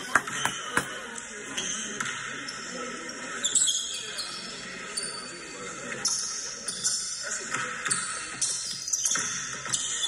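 Basketball being dribbled on a hard indoor court, a string of short knocks, under background music.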